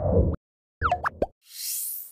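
Short animated sound logo: a deep thump, then a few bubbly pops that glide up in pitch about a second in, then a high sparkling shimmer near the end.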